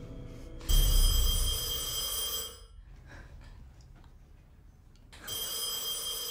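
A telephone ringing twice, each ring about two seconds long, with a quiet gap of about two and a half seconds between them.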